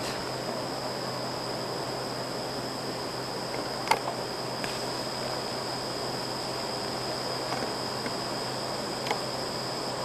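Crickets trilling steadily in one high, unbroken tone over an even hiss, with a single sharp click about four seconds in.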